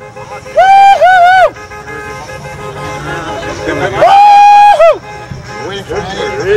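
Players cheering: two long, loud whooping shouts, one about half a second in and one about four seconds in, each sliding up into a held note and dropping away, with lower chatter between.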